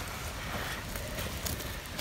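Small wood campfire burning with a steady hiss and a few faint crackles.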